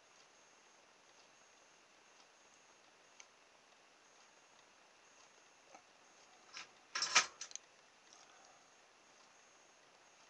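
Quiet workbench with a few faint clicks, then a brief clatter of small hard plastic and metal parts being handled about seven seconds in, as the toy helicopter is moved about in its helping-hands clamp after soldering.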